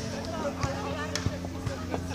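A beach volleyball being struck during a rally: a few sharp slaps, the loudest a little past the middle, over voices and steady background music.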